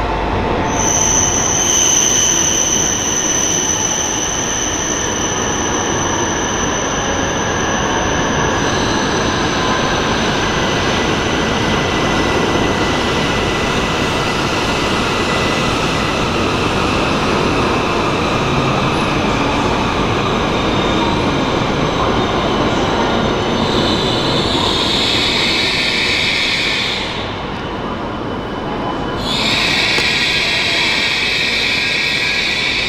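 E7/W7-series Shinkansen train running into the platform and slowing, a steady rushing rumble as the cars pass. A high, steady squeal sounds over it for the first eight seconds or so, and a louder hiss comes up near the end.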